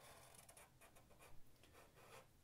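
Faint, irregular scratching of a felt-tip marker drawing a curved line on paper.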